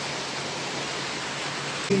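Steady rain falling, an even hiss with a faint low hum beneath it.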